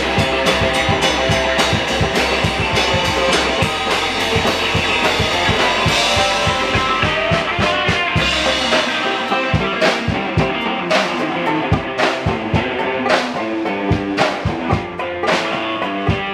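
Live blues-rock band playing an instrumental passage on upright bass, electric guitar and drum kit. After about eight seconds the bass drops away and the drums play sharp, separate hits as the song winds toward its end.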